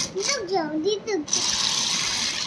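Pink battery-powered toy juicer running, a steady high whirring hiss as its motor churns water in the cup. It drops out for about a second near the start and then runs again.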